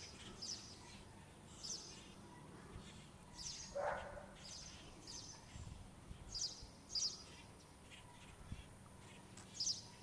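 Birds chirping outdoors: short high chirps repeated at irregular intervals, with a lower call about four seconds in, over faint steady background noise.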